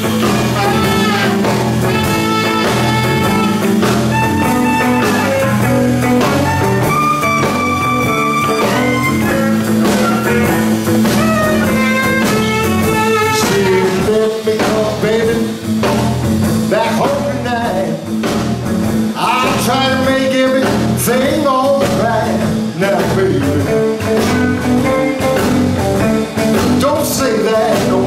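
Live blues band playing an instrumental break: a saxophone carries the lead with held and bending notes over electric guitar, electric bass and a drum kit.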